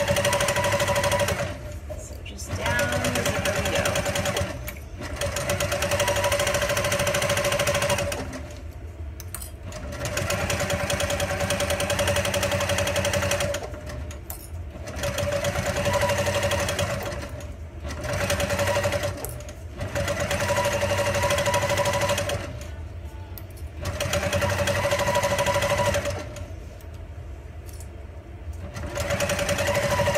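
Electric sewing machine stitching a zipper onto fabric, running in stop-start spurts of two to four seconds each with short pauses between, about eight runs in all. Each run is a steady motor hum with the rapid chatter of the needle.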